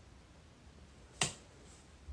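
A single short, sharp click about a second in, over quiet room tone.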